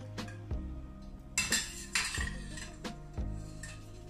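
Spatula clinking and scraping against a stainless steel pot and a frying pan while thick coconut cream is scooped over, with several sharp taps and a louder scrape about a second and a half in, over background music.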